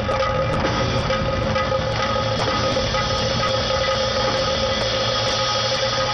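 Devotional music: a steady held drone over a dense, busy low texture, with a sharp high tick about twice a second.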